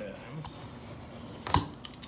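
Utility knife blade scoring a vinyl plank along a metal speed square: a light scrape, then a sharp click about one and a half seconds in and a smaller click just after.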